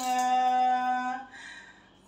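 A woman's singing voice holding one long, steady note in cải lương style at the end of a sung line, lasting just over a second before she stops.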